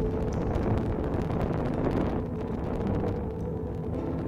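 Low, steady rumbling drone of dramatic film sound design, with a few faint held tones over it.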